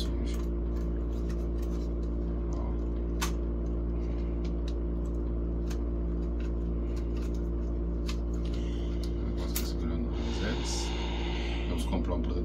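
Scattered light clicks and taps from the plastic arms and body of a small folding DJI drone being handled and unfolded, over a steady low hum.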